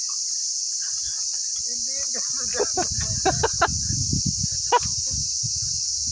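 Steady, high-pitched chorus of insects in the grass. From about two and a half seconds in, a low rumble of wind on the microphone joins it, along with short bursts of laughter.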